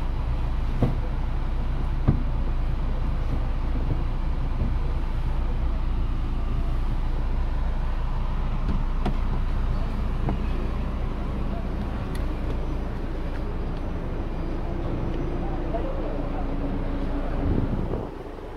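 Volkswagen Gol Trend's engine idling, a steady low rumble heard inside the cabin, with a few light clicks from the gear lever and interior being handled.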